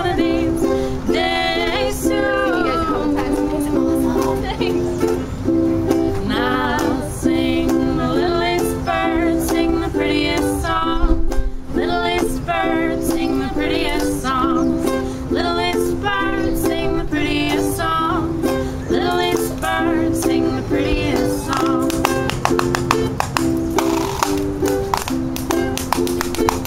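A ukulele is strummed in a steady rhythm while women's voices sing a folk tune over it. Toward the end, a washboard scraped and tapped with thimbled fingers adds a denser clicking rhythm.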